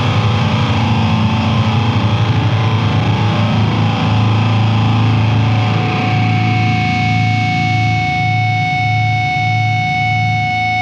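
Grindcore/powerviolence band playing with heavily distorted guitar. Fast, dense playing gives way about four seconds in to a held, pulsing low chord, and a steady high whine rings over it from about six seconds in.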